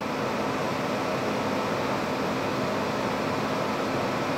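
Steady whooshing hum of a ventilation or air-conditioning fan in a kitchen, unchanging throughout, broken only by a split-second dropout right at the start.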